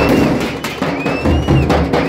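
Street drum troupe beating frame drums with sticks and large bass drums in a fast, loud beat. Over it, a piercing finger whistle rises and falls twice, once at the start and again about a second in.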